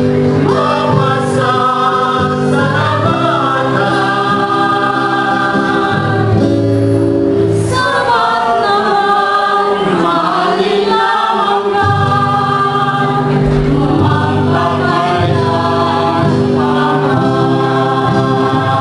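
Mixed choir of women and men singing a slow song in sustained, held chords, accompanied by an acoustic guitar.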